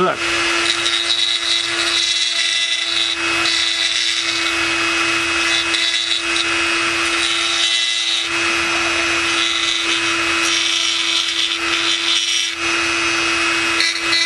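Dremel rotary tool running steadily with a small bit grinding into a plastic model panel, a constant motor hum with a high whine over it, dipping briefly a few times as the bit is eased off the plastic. The bit is carving out a rectangular window opening, softening the plastic as it cuts.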